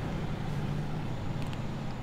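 Steady low background hum, with a couple of faint light clicks about one and a half seconds in.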